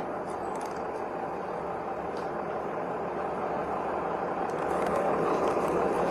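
Steady outdoor street noise at a night-time intersection, picked up by a police body camera's microphone, growing slightly louder over the last couple of seconds.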